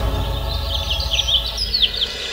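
Birds chirping in a quick run of short, sliding calls, with background music fading out underneath.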